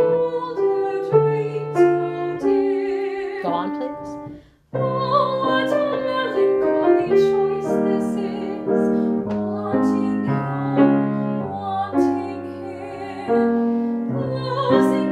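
Classical female voice singing a phrase over grand piano accompaniment. Both stop briefly about four and a half seconds in, then start the passage again.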